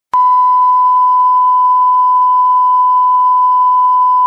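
Broadcast 1 kHz line-up test tone played with colour bars: one steady, unbroken beep, starting with a click just after the start.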